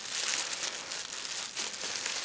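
Packaging crinkling irregularly as it is handled and unwrapped.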